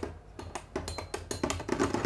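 Two metal Beyblade spinning tops, Meteo L-Drago and Galaxy Pegasus, knocking and grinding against each other in a clear plastic stadium: a quick, irregular run of clicks that grows busier near the end.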